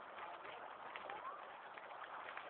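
Faint bird calls, short rising chirps, over a steady hiss of outdoor noise, with a few light clicks.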